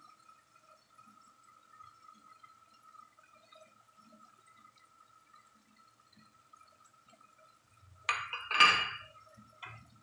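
Mash dal simmering in a pot: faint bubbling over a faint steady high tone. About eight seconds in there is a brief, loud clatter.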